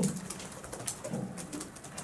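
A pause in a man's speech: low room noise with a few faint clicks and a brief soft murmur of voice a little over a second in.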